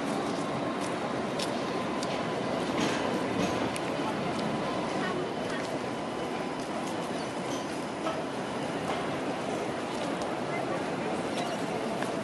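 Alstom Citadis X05 light rail tram rolling slowly along street track, with scattered clicks over steady city street noise and indistinct voices of passers-by.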